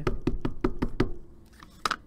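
Distress Oxide ink pad in its plastic case tapped rapidly against a rubber stamp to ink it, about five hollow taps a second for roughly a second. A single sharper click follows near the end.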